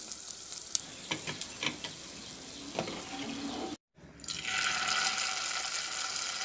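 Batter-coated egg pieces frying in hot oil in a non-stick pan, with scattered light crackles and clicks. After a brief break about four seconds in, a louder, steady sizzle follows as a fresh ingredient fries in the oil.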